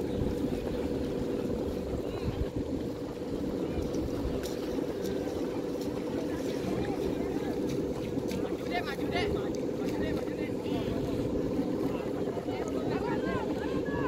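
Steady, wavering drone of a Balinese kite hummer (guwangan), the taut ribbon on the janggan kite's bow vibrating in the wind, with short rising-and-falling calls over it from about halfway through.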